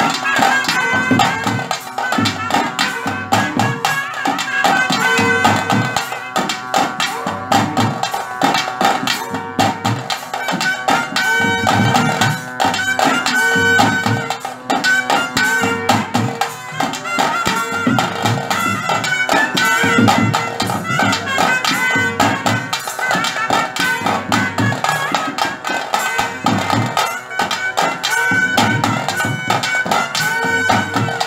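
Traditional South Indian ritual music: a shrill reed wind instrument plays a sustained, wavering melody over steady rhythmic drumming.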